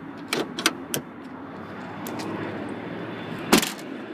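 A few light clicks in the first second, then the trunk lid of a 2014 Mazda 3 sedan being shut: one sharp slam about three and a half seconds in.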